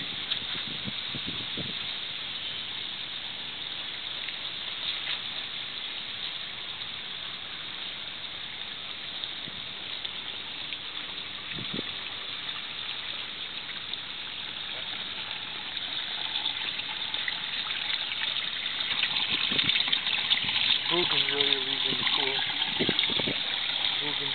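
Steady rush of running, splashing water at a swimming pool, growing louder over the last several seconds.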